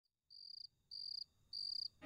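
A cricket chirping three times, about 0.6 s apart. Each chirp is a short, high, rapidly pulsed trill.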